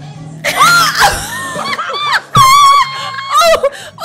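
Women screaming and shrieking in high, wavering voices, with several overlapping squeals and then one long held shriek about two and a half seconds in, over a steady background music bed.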